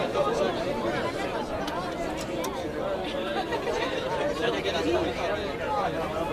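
Crowd chatter from a rugby match: many spectators' and players' voices talking over one another at a steady level, with no single speaker standing out.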